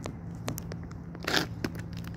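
Dry twigs and brush crackling and snapping underfoot while walking through forest undergrowth, a few sharp snaps and a longer rustling crunch about a second and a half in. A steady low hum runs underneath.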